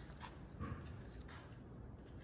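Quiet room tone with a few faint, soft knocks from footsteps and phone handling as someone walks while filming.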